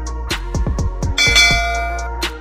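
A bell sound effect rings out a little past halfway and holds to the end, over a background music beat of repeated deep drum hits that fall in pitch.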